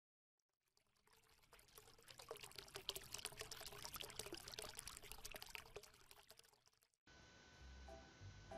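Faint pouring, trickling water-like sound full of tiny crackles, starting about a second and a half in and dying away shortly before seven seconds in.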